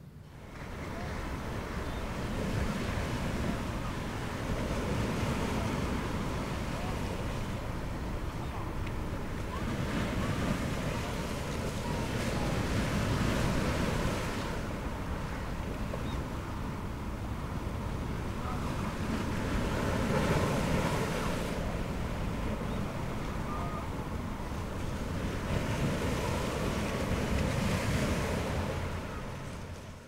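Ocean surf washing against a rocky shore, rising and falling in slow swells every several seconds. It fades in at the start and fades out at the end.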